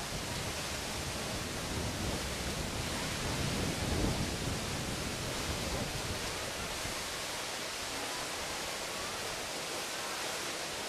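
Water gushing from the discharge outlets of the Tsujun Bridge, a stone arch aqueduct bridge, and crashing into the river below: a steady rushing, with a deeper rumble swelling and peaking about four seconds in.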